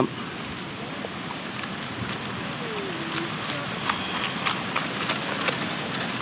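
Fingers scraping and picking wet, rotten muck off a slab of bark: a rustling scrape with scattered small crackles and snaps.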